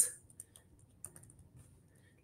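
A few faint computer-keyboard keystrokes typing a short word, in two small clusters: a couple of soft clicks about a third of a second in, then several more between about one and one and a half seconds.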